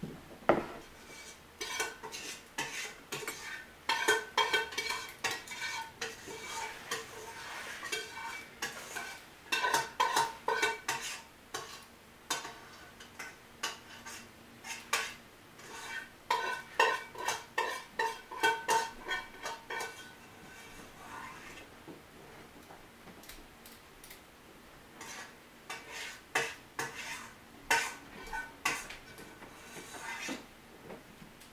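Steel wheels of a passing grain train's covered hopper cars on the rails: clusters of sharp metallic clicks and clanks that ring on briefly, with a quieter spell about two-thirds of the way through.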